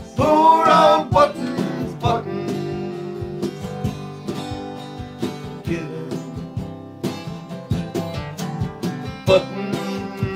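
Acoustic guitar strummed, with a voice singing a held, wavering note during the first second; after that the guitar carries on alone.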